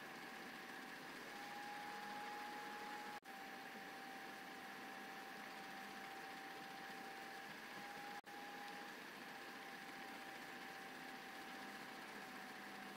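Faint room tone: a steady low hiss with a thin, high, steady hum, broken by two brief dropouts about three and eight seconds in.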